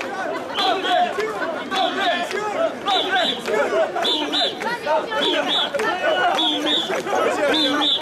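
Crowd of mikoshi bearers chanting together in a steady rhythm as they carry the portable shrine. A high, short double note repeats about once a second, keeping time with the chant.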